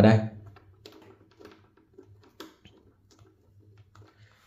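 Faint, scattered small clicks and taps of small metal spade (fork) speaker connectors being clipped onto an amplifier's closely spaced speaker binding posts.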